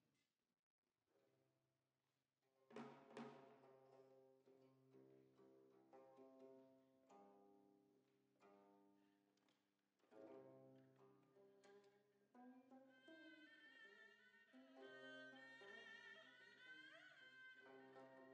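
Quiet Korean traditional ensemble music: plucked gayageum notes ringing over a sustained low tone, joined about thirteen seconds in by a held, reedy saenghwang chord.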